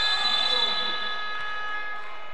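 Gym scoreboard buzzer sounding one long steady tone, signalling a timeout. Faint voices carry on underneath.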